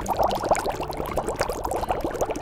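Boiling sound effect: a pot of soup bubbling at a rolling boil, a rapid, continuous stream of small bubble pops.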